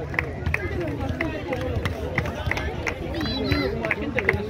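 Several people talking at once, indistinct and overlapping, over a steady low rumble, with a short high chirp repeating about three times a second.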